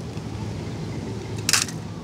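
Low steady background hum, with one brief clack about one and a half seconds in as a die-cast toy car is put among other toy cars in a plastic basket.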